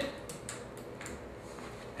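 A few quiet clicks and ticks from a hose's fitting being handled and attached to the drain valve at the bottom of a biodiesel processor.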